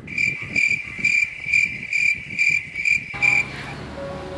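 Cricket chirping sound effect: about eight short, evenly spaced chirps, roughly two a second, that cut off suddenly about three seconds in, the comic 'awkward silence' gag.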